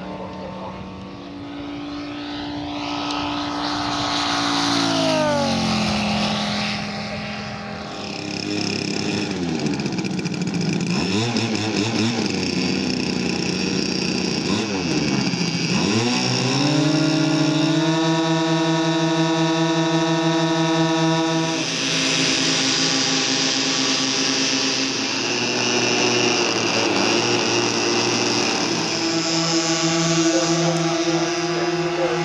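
Engines of large radio-controlled scale warbird models. First a fighter model's engine falls and rises in pitch as it dives and passes several times. Then comes a steady hum of several engines held at constant pitch as a four-engine B-17 model runs on the ground for takeoff.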